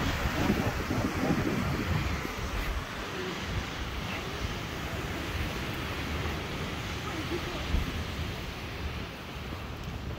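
Wind buffeting the phone's microphone over the steady wash of ocean surf, with faint voices in the first couple of seconds.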